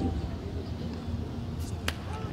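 Open-air ambience on a training pitch, a steady low rumble with a single sharp click near the end.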